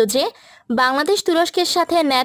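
Speech only: a woman narrating in Bengali, with a brief pause about half a second in.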